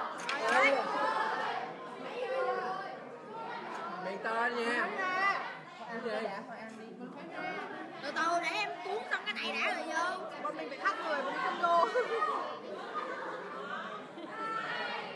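Several people talking over one another: conversational chatter with no single clear voice.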